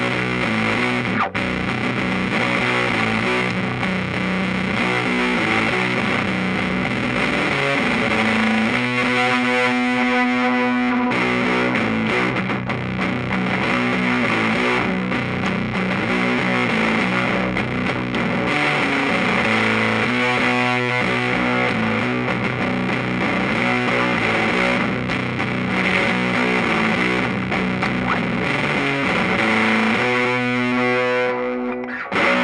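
Electric guitar played through a Fuzzlord Void Master, a 1970s-style silicon-transistor fuzz pedal based on the Fuzz Face, into a Music Man 212-HD amplifier: heavily fuzzed, distorted riffing. Twice a chord is left ringing for a couple of seconds.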